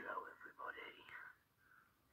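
A man's voice played back through a laptop speaker and re-recorded, faint and thin, with indistinct words for about a second and a half, then trailing off into softer murmurs.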